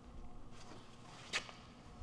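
A single short, sharp click a little over a second in, over a faint low hum.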